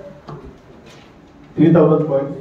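A man's voice breaks in loudly about a second and a half in, after a quiet stretch of room noise with a couple of faint clicks.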